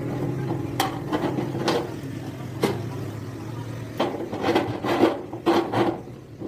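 Steel roller-wheel hinge of a folding door being turned and shifted by hand, giving short irregular metal scrapes and rubs, coming quicker in the last two seconds.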